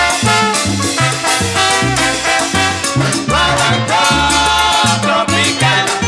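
Salsa guaguancó recording in an instrumental passage: a steady bass line and a driving percussion rhythm under pitched melody lines from the band, with sliding notes a little past halfway and again near the end.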